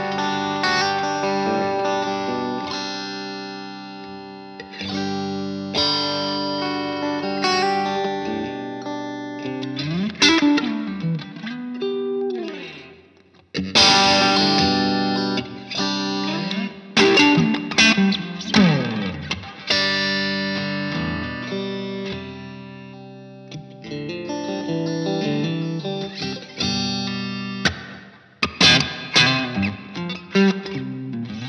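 Fender Player Stratocaster with single-coil pickups played clean through a guitar amplifier: ringing chords and riffs with sliding pitches. About thirteen seconds in the sound cuts out and a loud strum comes in, and near the end it breaks into quick choppy stabs.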